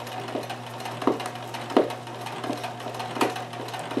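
Kenmore 158.1914 sewing machine stitching free-motion embroidery: a steady motor hum with irregular knocks from the needle and hook. The machine is grumbling a bit and not running smoothly from the bobbin area, the kind of trouble that thick embroidery thread or thread wrapped around the bobbin area can cause.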